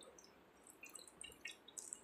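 A few faint drips and trickles of coloured water poured from a paper cup into a shallow plate, over near silence.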